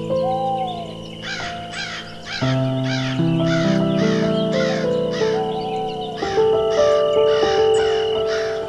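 Ambient music of held synthesizer chords, changing twice, under a bird giving a fast series of harsh calls, about two or three a second, from about a second in.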